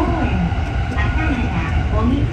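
Steady low running rumble of a JR Chuo Line rapid train (E233 series), heard from inside the car, with an announcement voice over it.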